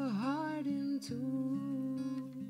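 Song: a single voice holds a long sung note, dipping in pitch just after the start before settling, over sustained accompaniment with a plucked note about a second in.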